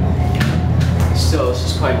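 Steady low hum inside a MontgomeryKONE hydraulic elevator cab, from the cab's machinery or ventilation fan. There is a single click about half a second in.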